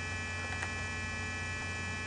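Steady electrical hum, a low drone with thin high-pitched tones over it, that stays unchanged throughout.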